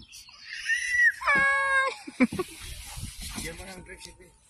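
A young child's high-pitched squeal, one wavering cry of under a second about a second in, followed by a couple of seconds of faint rustling noise.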